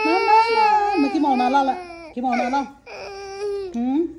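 A toddler crying: a long, high, wavering wail for the first two seconds, then shorter sobbing cries broken by brief pauses, the last one rising in pitch near the end.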